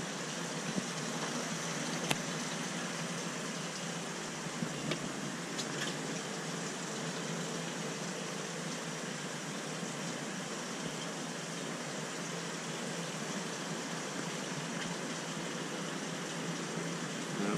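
Steady hiss of aquarium water circulation and filtration equipment, with a few faint clicks.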